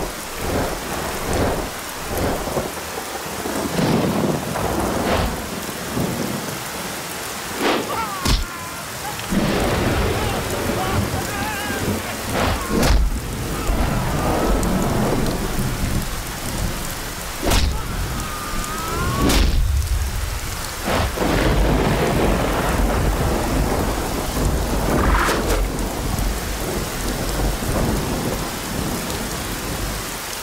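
Heavy rain falling steadily, with thunder rumbling low and several sharp cracks scattered through, the heaviest rumbling in the middle stretch.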